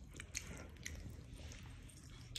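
A person chewing a mouthful of soft food, with faint wet mouth clicks and smacks scattered irregularly.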